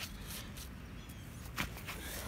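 A screwdriver pushed into hard, compacted lawn soil: a few faint scrapes and ticks over a quiet outdoor background.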